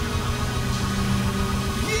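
Live worship music between vocal lines: steady held chords over a low bass drone, with the next vocal line starting right at the end.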